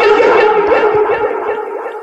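Voices holding a drawn-out, wavering chanted note that fades out over about a second and a half.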